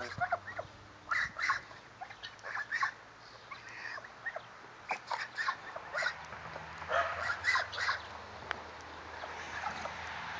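A flock of geese feeding at a metal dish, with scattered short, soft calls from the birds.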